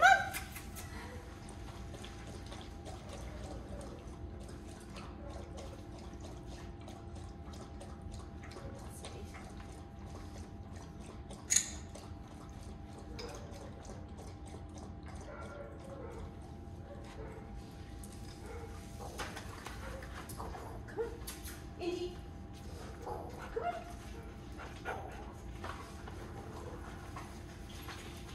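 A dog moving about on a hard floor: scattered light clicks and taps over a steady room hum, with one sharper tap about eleven and a half seconds in.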